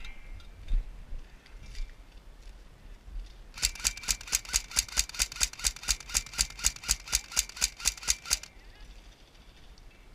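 Airsoft electric gun (AEG) firing a rapid, even string of shots, about five a second, for around five seconds starting a third of the way in, after one earlier single shot.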